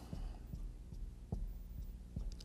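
A steady low room hum with a few faint, soft knocks, from a pen sketching a graph during a pause in speech.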